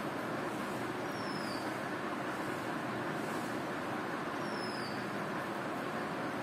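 Steady background noise with no speech, and two short high falling chirps, one about a second in and another after about four and a half seconds.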